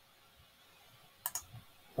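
Computer mouse button clicking: a quick pair of sharp clicks about a second and a quarter in, then a fainter single click, as a colour is picked from a drop-down palette.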